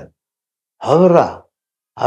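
An elderly man's voice: a single short drawn-out vocal sound between pauses, rising and then falling in pitch, about a second in.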